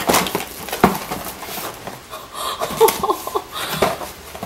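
Crinkling and rustling of packaging, with many sharp crackles, as a cardboard shipping box is rummaged and a paper gift bag and snack packets are pulled out.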